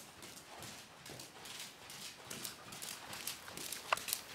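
Horse trotting on sand footing in an indoor arena: soft hoofbeats in a steady rhythm, with one short, sharper sound just before the end.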